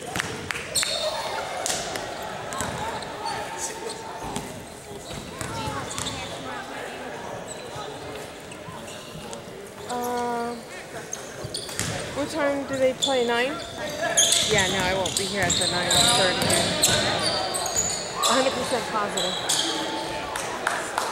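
A basketball bounces on a hardwood gym floor as a player dribbles at the free-throw line, and voices echo in the hall. From about twelve seconds in, a run of short high squeaks from sneakers on the court joins in as play resumes and the sound grows livelier.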